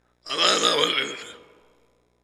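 A man's short vocal sound without words, close on a headset microphone: one loud burst about a quarter second in that fades away over about a second.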